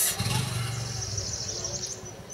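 Insects chirping in a high, steady trill over a low, steady hum.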